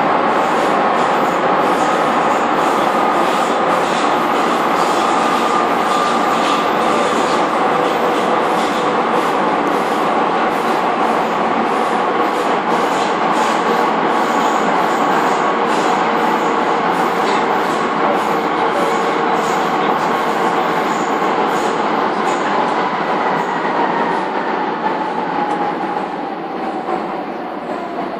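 Docklands Light Railway train running at speed through a tunnel, heard from inside the carriage: steady wheel-on-rail rumble with a motor whine. Over the last few seconds the whine falls in pitch and the noise eases as the train slows for the station.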